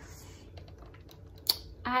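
Handling noise of the recording device being moved and turned: a run of faint small clicks and taps, then one sharp click about a second and a half in.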